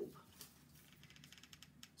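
Near silence with faint small clicks and taps as a hot glue gun is picked up and brought to the fabric.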